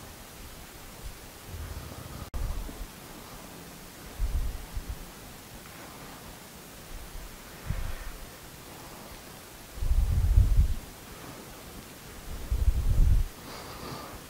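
Handling noise from a handheld video camera being moved over a table: five low rumbling bumps, the last two the longest and loudest, over a steady hiss.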